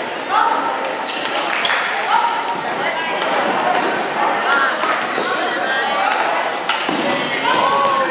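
Badminton rackets striking a shuttlecock back and forth in a rally, a sharp hit about every one and a half to two seconds, echoing in a large gym over the steady chatter of spectators' voices.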